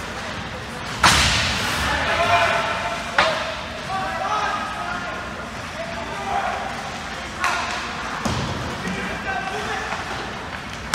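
Ice hockey play heard from the stands of an echoing rink: a few sharp impacts from the play on the ice, the loudest about a second in and others near three and eight seconds, over the chatter of spectators.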